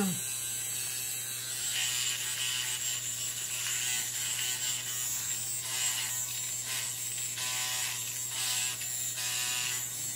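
Finishing Touch Flawless facial hair remover, a small battery-powered trimmer, running with a steady high-pitched buzz as it is pressed against the skin of the cheek. The buzz wavers slightly as it moves.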